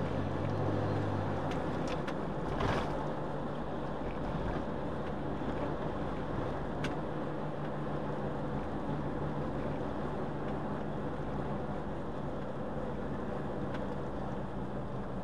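Steady engine hum and tyre noise of a car driving on a wet road, heard from inside the cabin. A brief knock comes a little under three seconds in.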